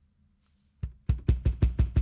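Kick drum sample from Native Instruments Drum Lab, triggered from the MPC piano roll: a single hit, then a quick run of about six hits at roughly six a second, heavy in the low end.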